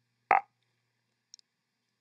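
One brief vocal sound from a man, a fraction of a second long, about a third of a second in; the rest is near silence with one faint tick near the middle.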